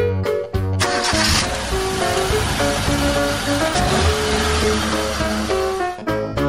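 Background music with a car engine sound effect laid over it, starting suddenly about a second in and running on.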